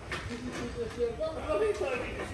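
Indistinct speech, with a few faint knocks.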